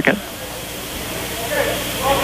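Steady background noise of a school gymnasium during a stoppage in play: a low, even hiss of crowd and room sound that swells slightly, with a faint distant voice about three-quarters of the way through.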